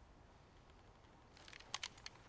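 Near silence, then a few short, sharp clicks about a second and a half in.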